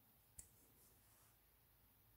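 A single faint click about half a second in, as the briar pipe's stem is pulled out of its silver-banded shank.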